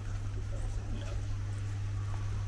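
A steady low electrical hum, with faint indistinct background sounds over it.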